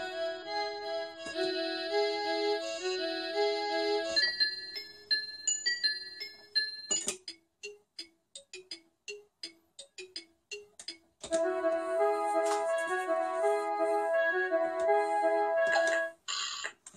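Kawasaki I-Soundz electronic drum kit sounding its pitched pentatonic instrument voices in a short repeating step pattern, triggered by a 4017 gate sequencer. The voice changes as it is switched: a low repeating note pattern, higher stepped notes about four seconds in, short clicky ticks from about seven seconds, and the low note pattern again about eleven seconds in.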